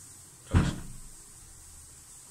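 A single dull thump about half a second in, dying away within half a second.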